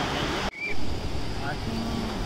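Steady rush of beach surf and wind on a phone microphone, with faint distant voices of people playing in the water. The sound breaks off abruptly about half a second in at an edit, then comes back with a brief louder swell of noise.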